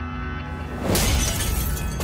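Glass of a framed picture shattering under a punch, a sudden loud crash about a second in that trails into crackling fragments, over dramatic background music.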